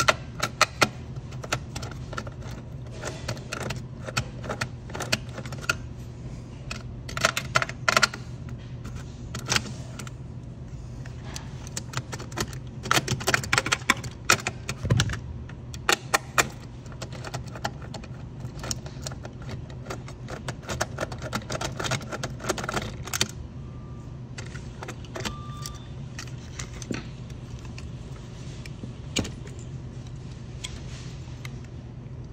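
Metal parts and hand tools clicking and clinking in irregular bursts as a fryer's electrical contactor box is worked on, over a steady low hum.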